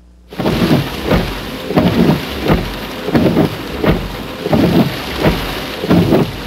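Heavy rain on a car's windshield, heard from inside the cabin, with the wipers sweeping in a steady rhythm about every two-thirds of a second. It starts suddenly about a third of a second in.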